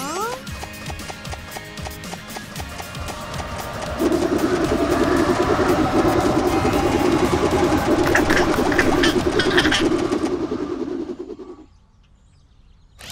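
Cartoon background music with a rising whistle-like sound effect at the start. About four seconds in, a loud, steady rushing sound effect takes over as swirling sand raises a sand castle, fading away just before the end.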